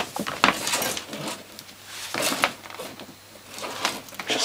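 Old 1960s–70s house building wire being twisted and handled, its stiff insulation making irregular scraping, rustling and clicking noises in short bursts.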